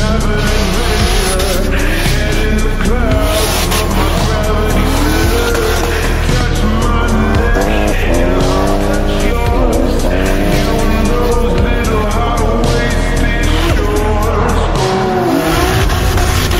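Drift cars' engines revving hard, rising and falling repeatedly, with tyres squealing as the cars slide sideways, mixed with background music.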